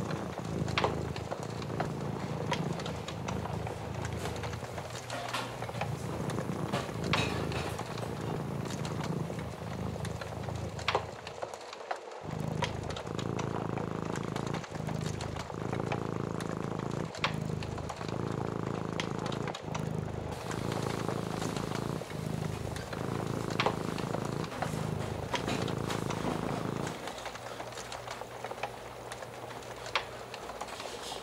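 A cat purring in steady cycles about a second long, breaking off briefly about twelve seconds in, with the scattered pops and crackles of a wood fire.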